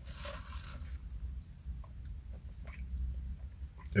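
A drink sipped through a straw, followed by small wet mouth clicks of chewing and swallowing, over a steady low rumble.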